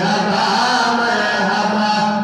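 A young male voice singing an unaccompanied Urdu naat into a microphone, holding long, drawn-out notes with slow melodic turns.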